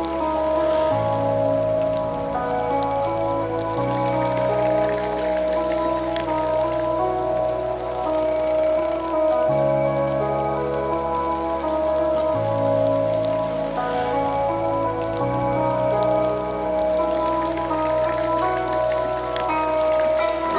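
Background music: slow, sustained chords with the bass note changing every few seconds.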